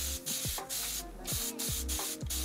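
Fine-mist spray bottle spraying water onto a curly wig in a quick run of short hissing bursts, over quiet background music with a deep bass beat.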